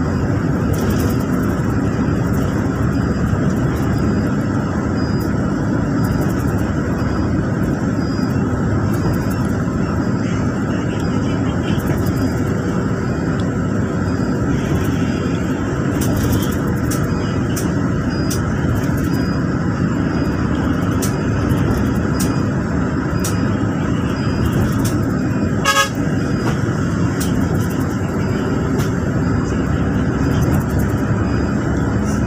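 Steady engine and tyre rumble heard from inside a passenger bus cruising on an expressway, with a brief sharp knock about 26 seconds in.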